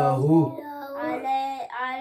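A boy chanting Qur'anic recitation, drawing the words out on long held notes, with a lower adult voice chanting alongside in the first half-second.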